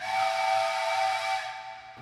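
A small hand-held whistle, which looks like a wooden toy train whistle, blown in one long breathy blast that sounds a chord of several close pitches and fades out near the end.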